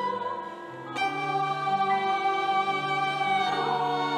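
Youth choir singing held notes with violin and piano accompaniment. The music thins out briefly about half a second in, then the voices and violin come back in together at about a second and hold a sustained chord over a repeating low piano figure.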